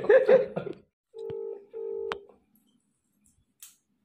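Ringback tone from a mobile phone on loudspeaker while a call waits to be answered: two short rings close together about a second in, then a pause, with the next ring starting at the end.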